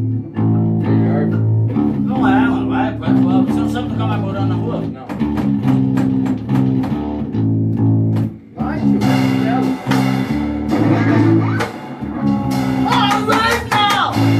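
Amplified electric guitar playing an intro riff of low chords that change roughly every half second.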